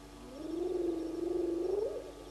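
A single long, low, rasping animal call that holds a steady pitch and rises sharply just before it ends.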